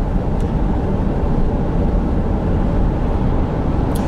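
Steady road and engine noise heard inside the cabin of a car moving at speed, a continuous low rumble.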